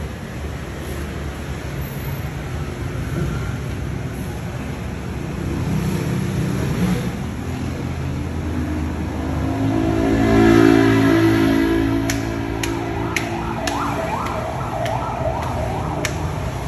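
Street traffic noise with engines running. A louder engine passes about ten seconds in, and near the end there is a rapidly repeating rising whoop, like a siren, with a few sharp clicks.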